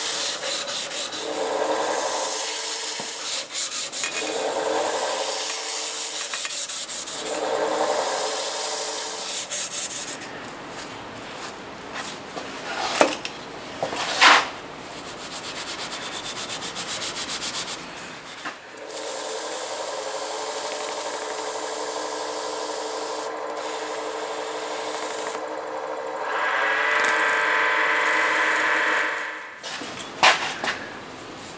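Wood lathe running with a steady motor hum as a bocote pen blank spins on the mandrel, while an abrasive strip sands it in three swelling passes about every three seconds. About halfway through come two sharp knocks. Then a paper towel held against the spinning blank gives a steady rubbing, louder for a few seconds near the end.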